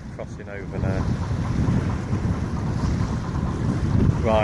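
Wind buffeting the microphone: a steady low rumble that grows a little louder after the first second.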